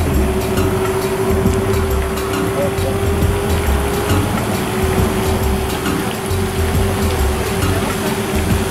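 A motor running with a steady, unchanging hum over the rushing noise of a waterfall, with uneven low rumbling underneath.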